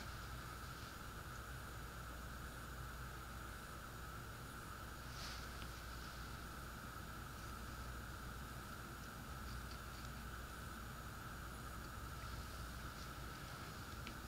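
Quiet room tone with a steady faint high whine, and one light tap about five seconds in.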